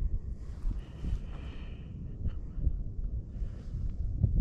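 Wind buffeting the microphone: an uneven low rumble that comes and goes in gusts.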